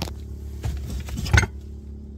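A few light knocks and clunks of handling, the loudest about a second and a half in, over a steady low hum; the angle grinder is being picked up but is not yet running.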